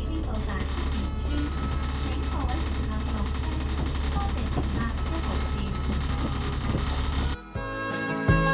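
Steady low rumble of an Alexander Dennis Enviro 500 double-decker bus, heard from inside as it rolls into a terminus, with background music and faint voices over it. Near the end the rumble cuts off suddenly and harmonica music takes over.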